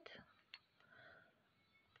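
Near silence: room tone with a single faint click about half a second in.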